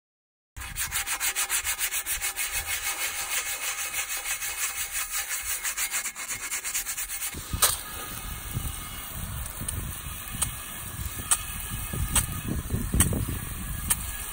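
Abrasive sponge scrubbing a dirty alloy wheel in quick, even back-and-forth strokes, about five a second. About halfway the rhythm gives way to a less even rubbing with a few sharp clicks.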